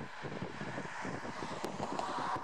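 Wind buffeting the microphone in uneven gusts over a steady outdoor background noise.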